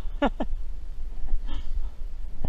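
A brief vocal sound just after the start, then a steady low rumble with faint handling noises.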